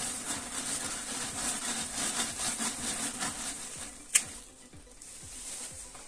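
Paper towel rustling and rubbing in a quick run of scratchy strokes for about three and a half seconds, then a single sharp click a little after four seconds in.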